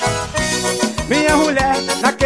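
Brazilian band music played live: an instrumental stretch with a keyboard melody of sliding notes over a steady drum beat.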